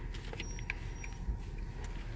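A low, steady engine rumble heard from inside a car's cabin, with a few faint clicks.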